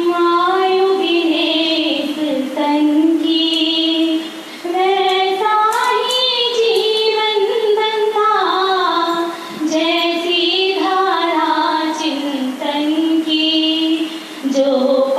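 A high voice singing a Hindi devotional bhakti song in long, held, ornamented phrases, with short breaths about four and a half and nine and a half seconds in.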